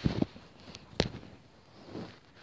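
Handling noise as the recording device is moved with its lens covered: a couple of dull thumps at the start, faint rustling, then one sharp knock about a second in.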